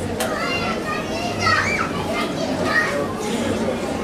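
Babble of many overlapping voices from a church congregation, children's voices clearly among them, with a brief click just after the start.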